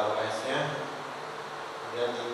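A man's voice amplified through a handheld microphone and PA, speaking for about half a second, then a steady low buzzing hum until near the end.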